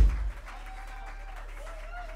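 Live band in a club: a heavy low drum hit at the start, then a single held instrumental note, over crowd noise and applause.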